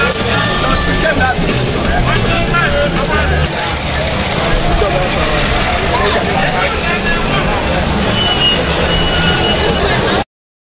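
Loud, steady street noise: road traffic with a babble of many people's voices.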